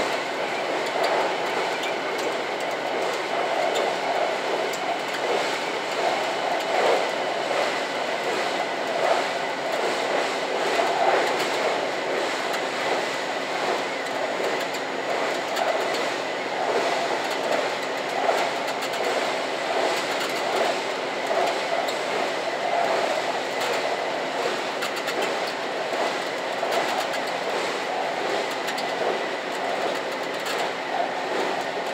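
JR Shikoku 2000-series diesel tilting express running at speed, heard from the driving cab: a steady running rumble of wheels on rail with engine drone, with faint, irregular clicks of rail clatter.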